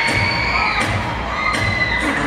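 Crowd cheering and screaming, with high-pitched shrieks each held for most of a second, over a steady low thumping beat.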